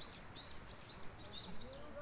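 A small bird singing a quick series of high, arched chirps, about four a second, which stops shortly before the end.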